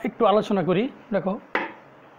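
A man speaking in short phrases, with one short sharp click about half a second in.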